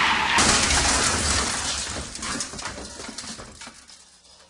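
A sudden loud crash that fades away over about four seconds, with a scatter of small breaking, debris-like ticks as it dies down.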